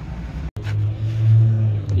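A steady low engine-like hum, swelling to its loudest about halfway through, after a brief dropout about half a second in.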